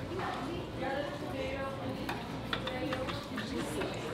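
Murmured talk in a restaurant dining room, with a few clicks of knives and forks on plates about two and a half seconds in.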